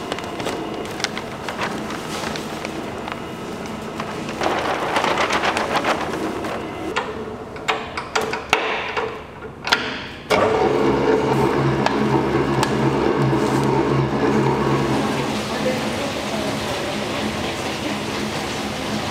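Large planetary stand mixer running with its wire whisk beating cake batter in a stainless-steel bowl while flour is poured in from a paper sack: a steady motor hum under the whir and splash of the whisk. About ten seconds in the sound changes abruptly to a louder, steadier hum.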